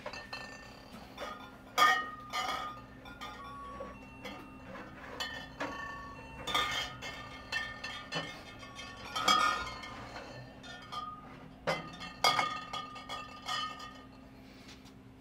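Glass liquor bottles clinking against each other as they are moved and straightened on a store shelf: repeated sharp clinks every second or so, each ringing briefly, over a steady low hum.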